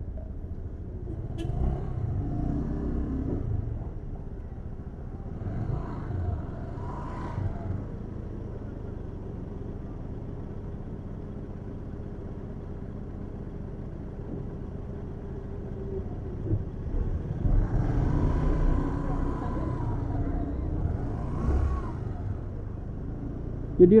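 Slow-moving street traffic: scooter and vehicle engines running at low speed in a jam, with snatches of voices. It gets louder about two seconds in and again for several seconds near the end.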